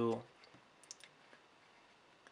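A few faint, sharp clicks and taps from handling a printed circuit board while fitting a power transistor's leads through its holes.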